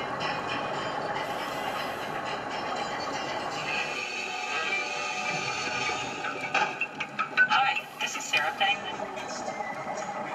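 A trumpet played underwater by a scuba diver, heard muffled and noisy through the water, with faint held tones. About two-thirds of the way in comes a run of sharp, louder bursts.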